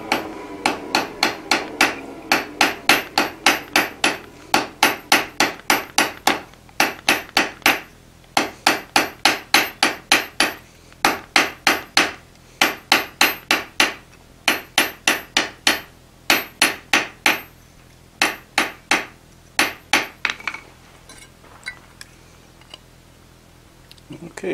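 Hand hammer striking a hot iron bar on the anvil face, drawing it down to a thin square stock for nails. Runs of blows at about four a second with short pauses between runs, ending about 20 seconds in with a few faint taps.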